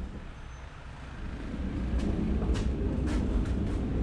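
Hand pallet truck rolling a loaded pallet across the floor of a lorry's box body: a low rumble that grows from about a second in, with a few sharp clicks and rattles in the second half.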